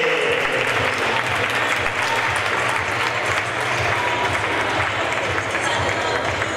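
Audience applauding steadily, with voices from the crowd mixed in.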